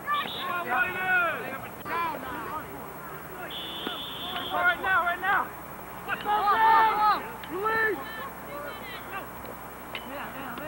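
Lacrosse players shouting and calling to each other on the field during play, several raised voices heard at a distance. A steady high tone lasting under a second comes in about three and a half seconds in.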